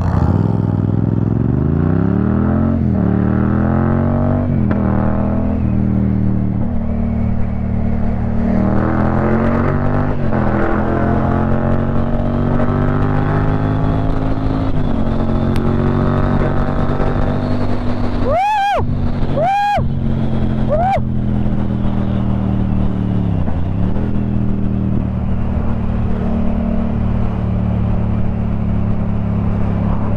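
Yamaha MT-07 parallel-twin engine under a helmet-mounted mic, accelerating through the gears: revs climb and drop back at each upshift over the first ten seconds, then hold steady while cruising, with a brief dip in revs later on. About two-thirds of the way through come three short sounds that rise and fall in pitch.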